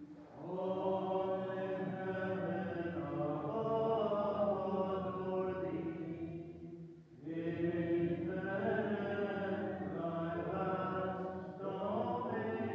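Slow singing of a hymn in held notes, in two long phrases with a short break for breath about seven seconds in.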